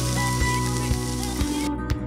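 Sizzling sound effect of food frying in a pan, over steady background music; the sizzle cuts off near the end.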